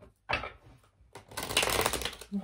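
A deck of tarot cards being shuffled: a brief flick of cards about a third of a second in, then a fast run of rapid card clicks from just past the first second.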